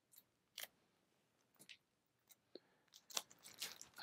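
Faint clicks and rustles of vinyl LP jackets being thumbed through on a tightly packed record shelf: a few scattered taps, with more of them near the end.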